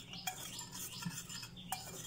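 Wire whisk stirring a dry flour mix in a bowl: a soft, scratchy rubbing with a faint click or two from the whisk.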